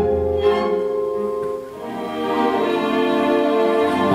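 Chamber orchestra playing an instrumental passage, its violins and cellos holding sustained chords. The sound thins out briefly about halfway through and then swells back up.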